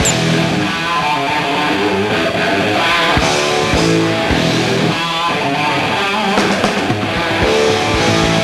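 Hard rock band playing live: distorted electric guitars holding chords over drums, an instrumental passage with no singing.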